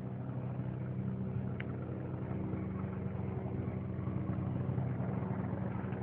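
Military aircraft circling overhead: a steady, low engine drone with no change in pitch.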